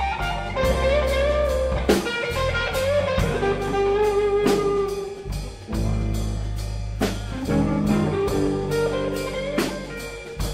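Live band of electric guitars, bass guitar and drum kit playing a blues with no vocals: a lead guitar line with bent notes over a steady drum beat and bass.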